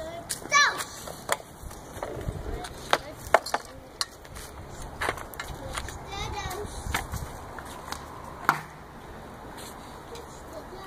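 A child's plastic three-wheeled kick scooter clacking and rolling on asphalt: several sharp knocks scattered through, with a low rumble of small wheels now and then. A toddler makes short vocal sounds near the start and again about midway.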